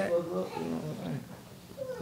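A woman's voice in a drawn-out, wordless excited exclamation with a gliding pitch during the first second, fading to quieter murmuring.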